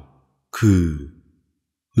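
Speech only: a male narrator says a single word in Thai about half a second in, falling in pitch.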